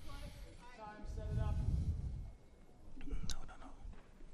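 A man's voice calling out in one long held shout over a low rumble, with a sharp click about three seconds in.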